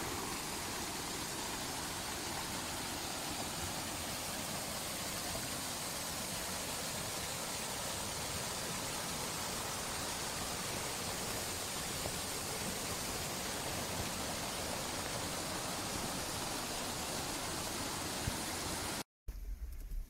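Water rushing steadily as it pours through a lock gate into a canal lock chamber, a constant churning noise. It cuts off abruptly about a second before the end.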